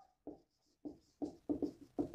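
Marker pen writing on a whiteboard: a run of about eight short, separate strokes as a word is written.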